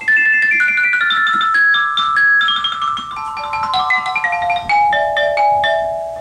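Ceramofone, a mallet keyboard with ceramic bars, played with two mallets in a fast run of struck notes, each ringing briefly. The line steps gradually down in pitch and settles on lower notes near the end.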